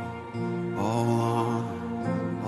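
Slow worship song: a male singer holding long notes, with a new phrase starting a little under a second in, over strummed acoustic guitar and electric bass.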